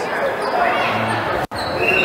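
Gym noise during an indoor basketball game: background chatter from spectators and players, with a brief high squeak near the end.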